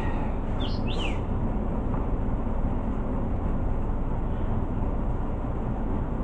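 Steady low hum of room noise, with two brief high chirps falling in pitch about a second in.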